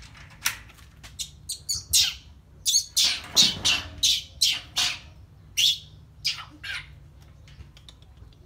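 Baby monkey squealing: a rapid run of short, shrill cries, thickest and loudest in the middle, then thinning out toward the end.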